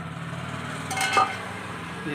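A steel cooking pot being handled, giving a sharp metal clink that rings briefly about a second in. A steady low hum runs underneath.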